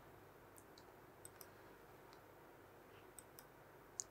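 Near silence: room tone with a few faint, short clicks, a pair about a second in, another pair about three seconds in and one at the very end.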